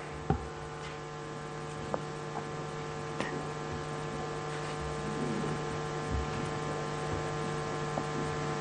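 Steady electrical mains hum from the microphone and sound system, with a few small clicks and knocks, the sharpest just after the start.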